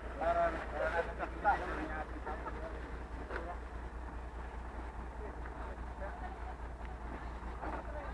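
Garbage compactor truck's diesel engine idling with a steady low throb, with voices of people talking nearby in the first couple of seconds.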